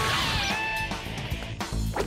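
Cartoon teleporter sound effect over background music: a shimmering hiss with held electronic tones as the missing leg materialises, fading out, then a low thump near the end.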